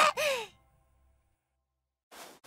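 A short vocal sigh or exclamation from a cartoon voice, rising briefly and then falling in pitch, lasting about half a second. The sound then cuts out to silence.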